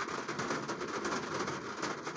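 Steady low background hiss with no distinct sound event, a pause between spoken words.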